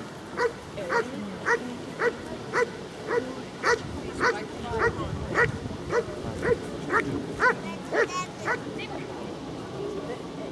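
German Shepherd barking steadily and insistently at a protection-sport helper, about two sharp barks a second: the hold-and-bark, in which the dog guards the helper by barking without biting. The barking stops about a second and a half before the end.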